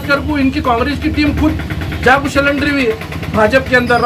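A man speaking in Hindi, in quick continuous phrases, over a steady low rumble.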